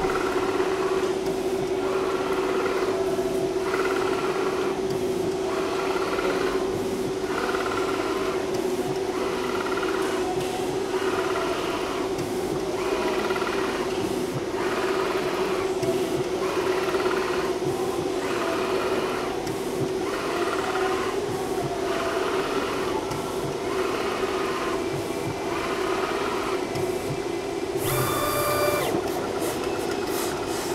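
Vertical inkjet cutter plotter printing, its print carriage sweeping back and forth across the paper about once a second over a steady motor hum. A brief, louder whirr with a tone comes near the end.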